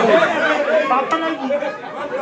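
Several men talking loudly over one another at once, an excited crowd chatter of overlapping voices.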